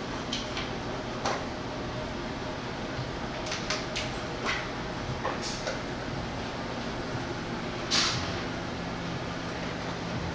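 Scattered small clicks and taps from a keychain amplifier board, its wires and a 9-volt battery snap being handled and connected. The sharpest click comes about eight seconds in, over a steady low room hum.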